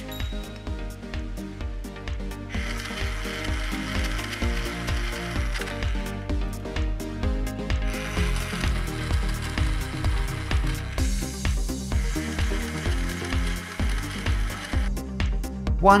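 Background music with a steady beat, with a buzzing power-tool sound effect laid over it in stretches of a few seconds. The effect is dubbed in for a toy tool fixing wooden toy train track.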